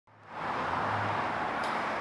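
Steady outdoor background noise, an even hiss-like rush that fades in at the very start, with a faint low hum during the first second.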